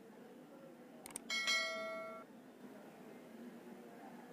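A single click, then a bright bell chime ringing for about a second and fading: the click-and-bell sound effect of an animated subscribe-button overlay.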